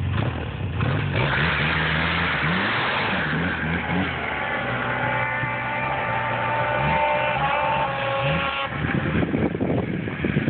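Arctic Cat M1100 Turbo snowmobile engine revving as it pulls away and rides off, the engine note rising and falling repeatedly with the throttle.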